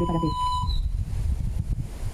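Low wind buffeting on a phone microphone outdoors. In the first moment a short steady whistle-like tone lasts well under a second, over the tail of a spoken word.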